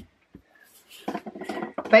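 Small plastic diamond-storage bottles knocking and clattering against each other as they are gathered and shuffled by hand. The first half holds only a couple of faint clicks; a quick run of light knocks starts about halfway through.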